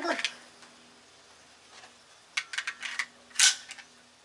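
Desert Eagle .50 AE pistol being loaded: a few short metallic clicks about two and a half seconds in, then one loud metallic clack about a second later as a round is chambered.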